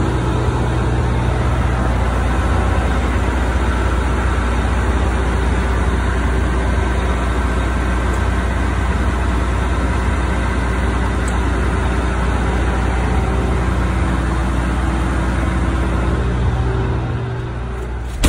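The power-folding grain tank covers of a John Deere T660 Hillmaster combine opening: a loud, steady machine hum with a constant low drone. It eases off and stops near the end as the covers reach fully open.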